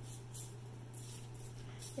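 Faint, brief crinkly jingles of a sparkly tinsel wand toy as kittens bat and grab at it, over a steady low hum.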